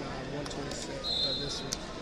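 Indistinct talk echoing in a large sports hall, with a short high squeak about a second in, typical of a wrestling shoe twisting on the mat, followed by a sharp knock.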